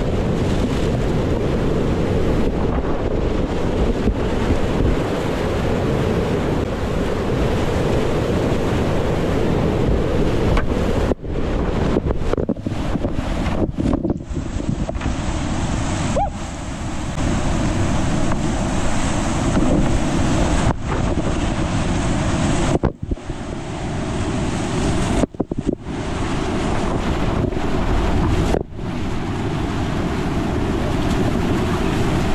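Loud, steady rush of whitewater rapids heard at close range from a kayak through an action camera's microphone, with wind and water buffeting the mic. The sound cuts out briefly several times in the second half.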